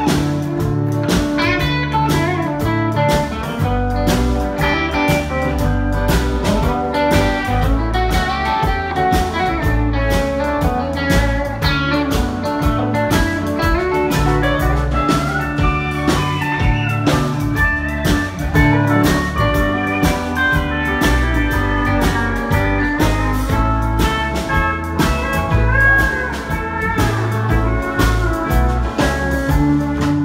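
Live honky-tonk country band playing an instrumental break with no vocals: electric and acoustic guitars and pedal steel over electric bass and a steady drum-kit beat.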